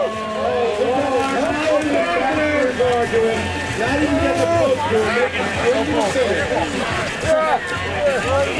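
A large crowd of spectators shouting, calling out and laughing, many voices overlapping, in reaction to a skier who failed to skim across the pond and is swimming out.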